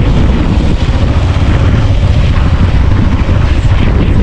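Motorcycle running on the move, heard under loud, steady wind buffeting the microphone.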